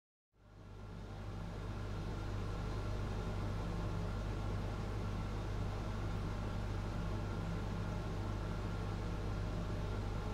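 A steady low hum, fading in over the first couple of seconds and then holding even.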